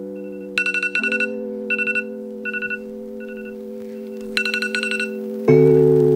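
iPhone alarm ringing: short clusters of rapid high beeps, repeating about once a second, stopping about five seconds in as the alarm is dismissed. Under it, sustained organ-like music chords change a few times, and the loudest chord comes in just before the end.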